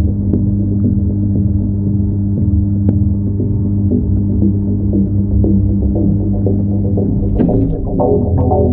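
Steady electrical hum of aquarium equipment, heard underwater and muffled through the submerged camera's housing, with a few faint clicks.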